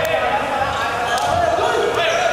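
A volleyball bouncing on a wooden sports-hall court floor, with the voices of players and onlookers running throughout.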